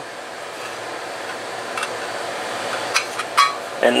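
Pieces of bent sheet steel being handled and set down on a wooden workbench: a few light clicks and a brief metallic clink over a steady background noise.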